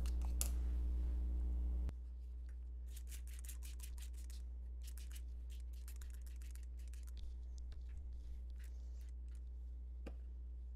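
A hand-pump spray bottle squirting water over a marker swatch sheet, several short sprays in quick groups, over a steady low hum.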